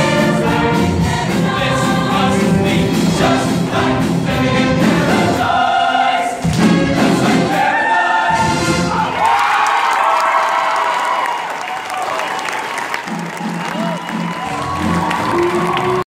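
Show choir and live band singing and playing the last bars of a song, which ends about nine seconds in. Audience applause and cheering follow.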